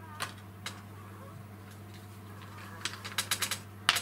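Light clicks and taps as a bottle of liquid glue and paper are handled on a craft table, with a quick run of small clicks about three seconds in and a sharper click near the end. A steady low hum runs underneath.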